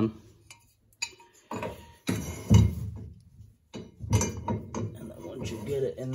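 Irregular metallic clinks and knocks of a hand-held inner tie rod removal tool being slid onto a car's tie rod and fitted at the rack end, the loudest knock about halfway through.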